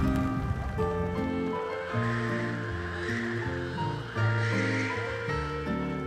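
Background music score: held notes that change every half second to a second, with two soft swells partway through.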